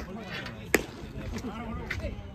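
A single sharp impact of a baseball, about three-quarters of a second in, with players' voices calling faintly across the field.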